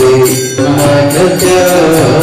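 Devotional chanting sung over a sustained instrumental accompaniment, with hand cymbals keeping a steady beat of about three to four strokes a second. There is a brief break about half a second in.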